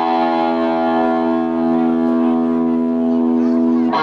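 An electric guitar in a live band holds one long, steady chord through an amplifier, then moves into changing notes right at the end.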